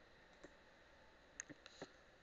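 Faint clicks of a computer mouse over near silence: one about half a second in, then a quick run of about four clicks near the end.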